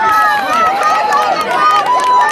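Crowd of spectators yelling and cheering runners on during a relay race, many high-pitched voices shouting over one another.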